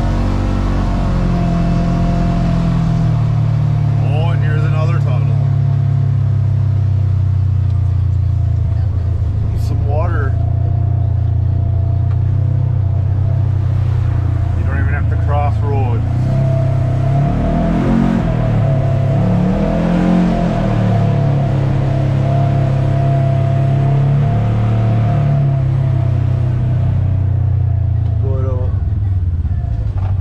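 Polaris General XP 1000's twin-cylinder engine running steadily as the side-by-side drives along, heard from the cab. Its pitch dips and rises twice a little past halfway.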